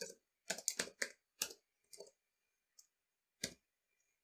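Computer keyboard being typed on: short, irregular keystrokes, quick runs in the first half, then sparser strokes with a pause of over a second before a last key near the end.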